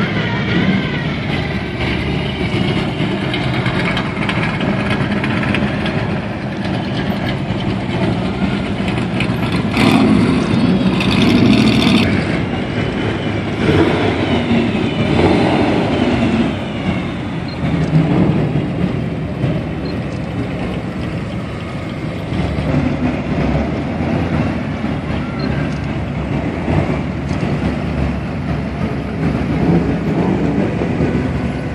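A steady parade of classic cars and hot rods driving slowly past at close range, their engines running in a continuous rumble, louder for a couple of seconds about ten seconds in.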